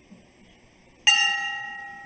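A bell struck once about a second in, its several ringing tones fading slowly.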